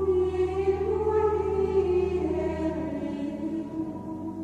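Choir singing slow, held notes, with a low sustained note beneath that fades out about three seconds in.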